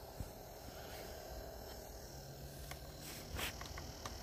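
Faint room tone: a low steady hum and hiss, with a soft click about a quarter second in and a brief rustle after three seconds. The TV's speaker gives no sound.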